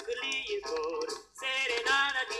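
A 1960s-style Romanian light-music song played from a vinyl record: a male voice with vibrato over instrumental accompaniment, with a brief break just past the middle.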